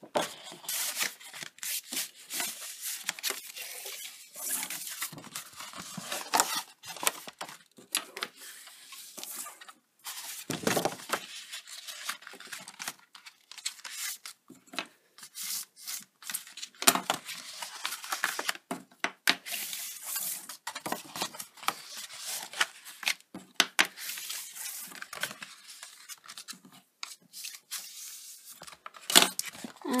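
Bone folder burnishing the score lines of heavy cardstock, with the card creased and folded along them: a long run of irregular papery scrapes and rubs with short pauses between strokes.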